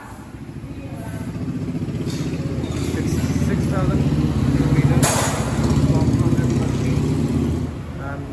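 Royal Enfield motorcycle's single-cylinder engine running with a steady low pulse. It grows louder toward the middle and drops off near the end, with a sharp click about five seconds in.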